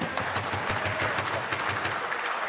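Steady applause from a group of legislature members, many hands clapping at once.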